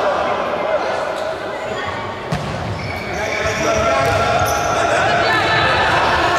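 Futsal ball being kicked on a wooden indoor court, with a couple of sharp strikes, the clearest a little over two seconds in, under steady calling and chatter from players and spectators echoing in the sports hall.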